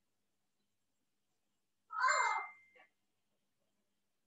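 A single short animal call, about half a second long, about halfway through, its pitch rising and then falling.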